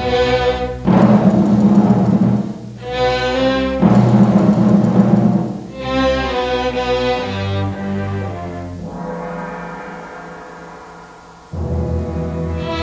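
Orchestral film score: a run of loud, heavy chords with timpani and strings, then one long held chord that slowly fades away. The full orchestra comes back in abruptly near the end.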